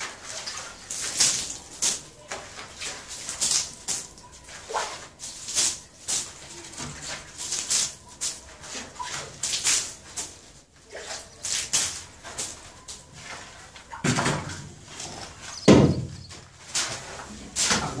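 Shovel scraping and turning a damp, crumbly sand-and-cement subfloor mix on a concrete floor, in repeated strokes about once a second, with two heavier thuds near the end.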